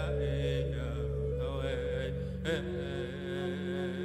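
Chanted powwow-style singing in vocables, the pitch sliding and wavering over steady held tones beneath, with one brief sharp accent about two and a half seconds in.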